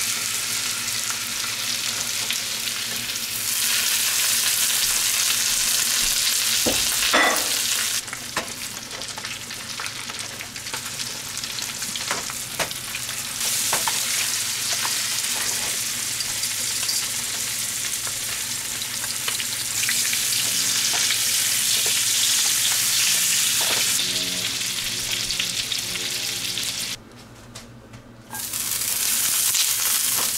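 Trout frying in butter in a nonstick skillet, a steady sizzle that steps louder and softer every few seconds, with occasional clicks of metal tongs against the pan as the pieces are turned. The sizzle drops away briefly near the end.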